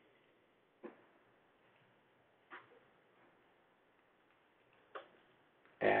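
Three faint, widely spaced clicks of computer keyboard keys as code is typed, over low room hiss.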